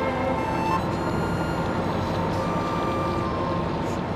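A Venetian vaporetto water bus's engine running steadily as it passes, under background music with held notes.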